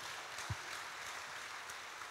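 Audience applauding, fairly faintly, with a single low thump about half a second in.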